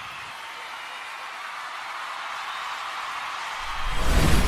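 Broadcast-style transition sound effect: a hiss-like noise swell that slowly grows louder, then a deep boom hits just before the end.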